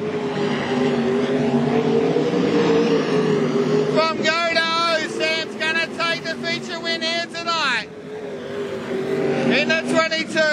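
Sprint car V8 engines at race speed on the dirt oval, the engine note swelling and falling as the cars power through the turns. A commentator's voice comes in over it from about four seconds in.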